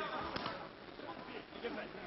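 Voices shouting among the crowd at a boxing match, with one sharp knock about a third of a second in.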